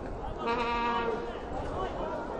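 A person's voice: one short held shout about half a second in, lasting a little over half a second, over a general murmur of chatter.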